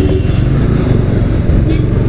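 Motorcycle riding in slow city traffic, heard from a camera on the rider: a loud, steady low rumble of engine and wind noise on the microphone.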